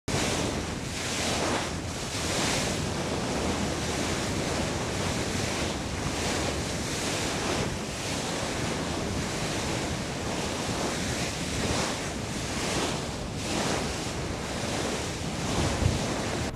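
A ship's bow wave rushing and breaking against the steel hull while under way, a continuous hiss of churning water that swells and eases irregularly. Wind buffets the microphone underneath it.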